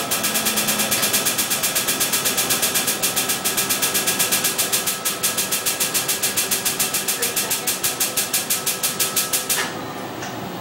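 Excimer laser firing a rapid, even train of pulses during LASIK corneal ablation, heard as steady clicking several times a second over a constant machine hum. The clicking stops suddenly near the end.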